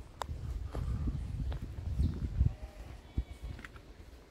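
Footsteps on a paved road with an uneven low wind rumble on the microphone, and a few short scuffs and clicks.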